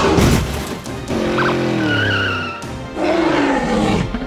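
Background music with a cartoon dinosaur roar sound effect: a loud noisy burst at the start, then a long, low roar falling slightly in pitch about a second in, and a shorter falling roar near the end.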